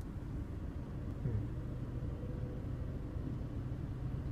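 Low, steady rumble of a vintage electric railcar rolling across a level crossing, heard from inside a waiting car, briefly a little louder about a second in.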